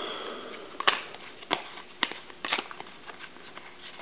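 A stack of trading cards being flipped through by hand: faint card-on-card sliding with four sharp card snaps about half a second apart. The tail of a breathy sigh fades out at the start.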